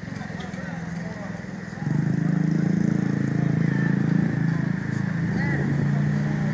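Street traffic noise: a motor vehicle engine running nearby, louder from about two seconds in, with faint voices in the background.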